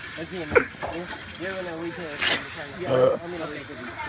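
Indistinct voices of people talking and calling out, with one sharp noisy burst about two seconds in.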